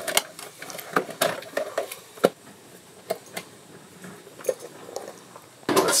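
Light clicks and knocks of electrical plugs and cords being pulled out of a wall outlet and power strip by hand, with one sharper click about two seconds in, then quieter handling.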